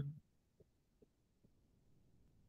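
Near silence: room tone with a faint low hum and three faint, brief ticks, after a short spoken "mm-hmm" at the very start.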